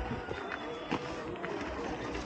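Outdoor market bustle: indistinct voices of people nearby, with a sharp click or knock about a second in.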